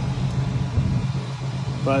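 A flatbed tow truck's engine idling: a steady low hum with rumble beneath it.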